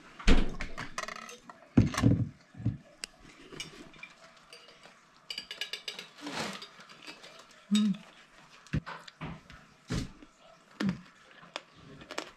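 Eating sounds close to the microphone: bites into crispy-skinned pork belly, with scattered sharp clicks and knocks of dishes and utensils, the loudest right at the start. A short hummed "hmm" comes about eight seconds in.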